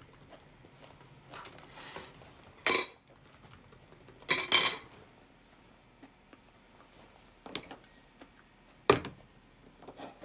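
Cutlery clinking against a dish a few times, with short ringing tones: once about a third of the way in, twice in quick succession near the middle, and once more near the end, with soft handling noises in between.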